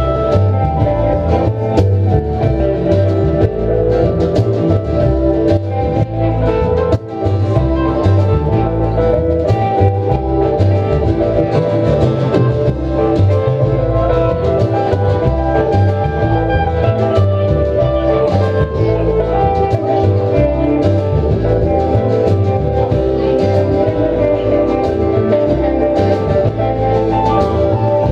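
Live folk-rock band playing a song: acoustic guitar, electric guitar, upright bass and drums, with a steady beat and sustained chords throughout.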